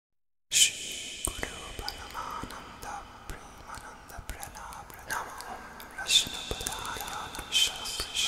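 Soft whispering voice over a faint hiss and a thin steady high tone, starting suddenly about half a second in, with a few sharp hissing bursts near the end.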